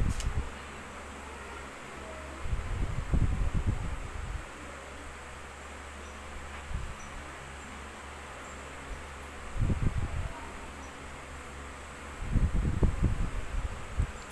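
Pencil writing on a notebook page, heard as three spells of soft, low rubbing and bumping over a steady low hum.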